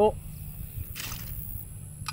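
A shooter's short shouted "Pull!" call, then a quiet stretch of open-air background with a faint steady low hum while the clay is in flight.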